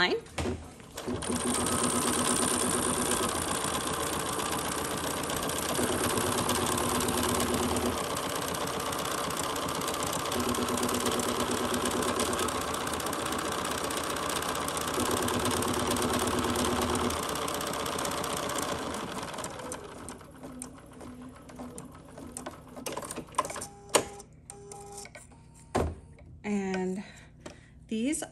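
Embroidery machine stitching a tack-down line through a square of quilt batting in the hoop: a steady rapid running that starts about a second in, shifts in tone every couple of seconds, and stops at about twenty seconds, followed by a few scattered clicks.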